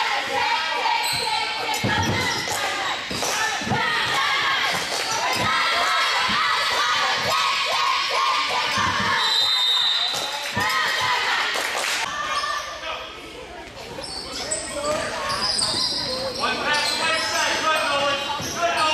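Gym noise during a youth basketball game: players and spectators shouting and calling out in a large, echoing hall, with the sharp bounces of a basketball on the hardwood floor. A brief referee's whistle sounds about halfway through.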